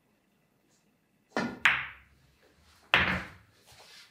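Fury pool cue striking the cue ball, and a moment later a sharp click as the cue ball hits an object ball. About a second and a half later comes another loud knock of billiard balls, then a few faint knocks.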